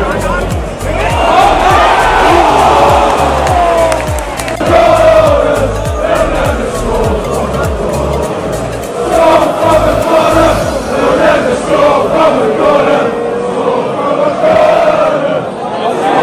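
Large football crowd singing a chant together, many voices in unison, with a regular low beat under it for roughly the first half.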